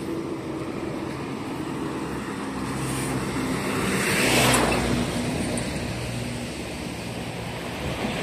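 Road traffic beside the path: a motor vehicle passes close by, its sound swelling to a peak about halfway through and then fading, over a steady background of traffic.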